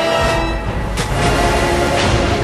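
Dramatic music over a low rumble that swells from the start, the sound of an airliner crashing into the sea, with a sharp crack about a second in.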